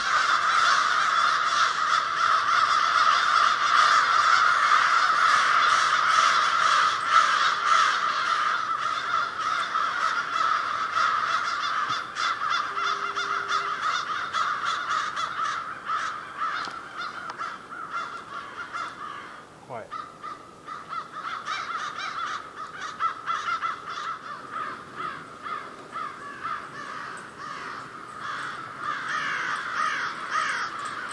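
A large flock of crows cawing, many calls overlapping into a dense, continuous din. The din thins out about halfway through, leaving sparser, separate caws.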